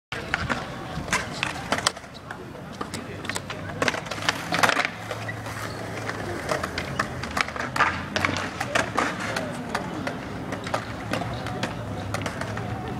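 Skateboard wheels rolling on concrete with a steady low rumble, broken by many sharp clacks and knocks of boards hitting the ground.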